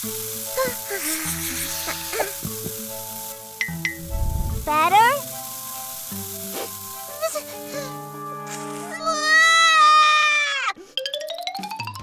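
Cartoon background music, with the hiss of an aerosol air-freshener spray over the first few seconds. A quick rising glide comes about five seconds in, and a long wavering high-pitched cartoon sound near the end.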